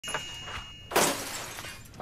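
A sudden loud crash of breaking glass about a second in, its shattering ringing off over the next second.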